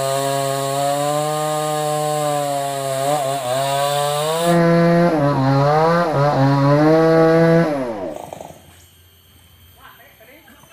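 Two-stroke chainsaw running at high revs cutting wood, its pitch dipping several times as the chain bogs down in the cut. Near the end the engine note drops and dies away.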